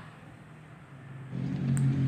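A low, steady engine hum comes in about a second in and grows louder, like a motor vehicle running nearby.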